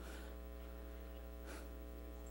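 Steady electrical mains hum with a buzz of higher overtones, unchanging throughout, with a faint brief rustle about three quarters of the way through.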